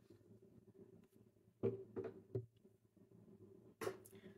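Mostly quiet, with three faint short knocks about halfway through and one more near the end: handling noise from the camera moving inside an acoustic guitar's hollow body.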